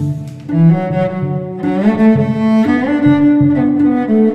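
A bowed cello plays a melody of sustained, changing notes over other cello parts sounding at the same time, layered live with a loop station.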